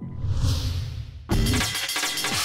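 A noisy, shattering sound effect, then loud electronic music with drums starting just over a second in.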